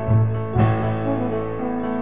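Instrumental background music with sustained chords, a new chord entering about half a second in.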